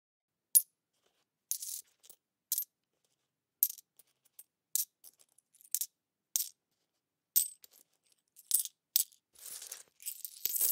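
Coins clinking: about ten short, sharp metallic clinks, one every second or so, then a longer jingling rattle of coins near the end.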